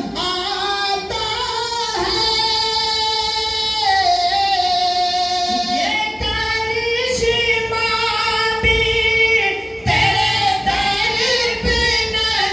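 A man singing an Urdu devotional naat into a microphone, in a high voice with long held notes that bend and ornament slowly, broken only by short breaths.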